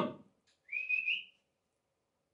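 A person whistling once to call a dog: a single short, slightly rising whistle, lasting about half a second and starting just under a second in.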